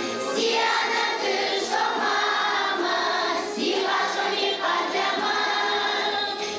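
Children's choir singing together, many voices in one continuous sustained song.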